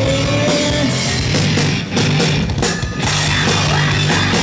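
Live heavy rock band playing loud, with distorted electric guitars, bass guitar and drum kit; the music breaks off briefly a couple of times near the middle in stop-start hits.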